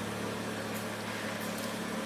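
A steady low hum with a faint hiss underneath, unchanging throughout.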